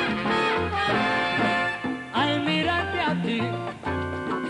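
Salsa orchestra playing live: brass carrying the melody over a bass line and Latin percussion.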